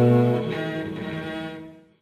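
Sustained bowed cello notes, recombined by the Dicy2 machine-learning improvisation plugin from a pre-recorded cello file and sounding in unison with the accompanying demo sound file. The notes fade over the second half and die away to silence.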